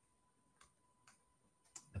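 Near silence with three faint computer keyboard keystrokes, roughly half a second apart.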